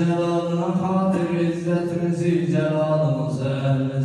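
A man's voice chanting a dua (Islamic supplication) in long, held melodic notes that slowly step down in pitch, without a break.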